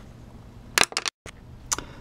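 A few sharp clicks over a low steady hum: two close together a little under a second in, then the sound drops out completely for a split second at an edit cut, then one softer click near the end.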